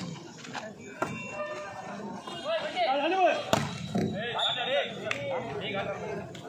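A volleyball struck by hand several times during a rally, sharp slaps a second or two apart, with players and onlookers shouting between the hits.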